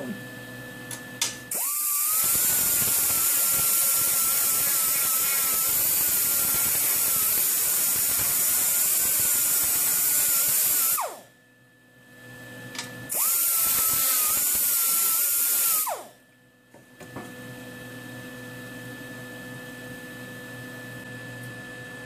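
Right-angle air grinder with a 2-inch 80-grit Roloc sanding disc running at a steady high whine while rounding off a spoon. It runs in two bursts, a long one of about nine seconds and a short one of about three, and its pitch falls as it winds down at the end of each.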